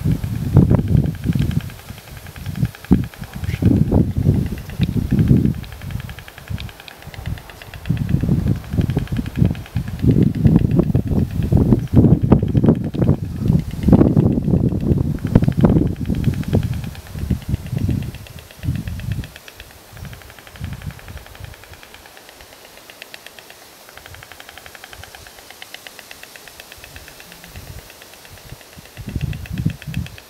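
Wind buffeting the microphone in loud, irregular low gusts, easing off about two-thirds of the way through to a faint steady hiss.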